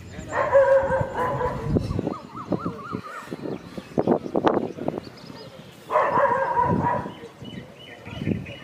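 A dog whining: two drawn-out whines about a second long, one near the start and one about six seconds in, with a warbling whine and a few short sharp sounds in between.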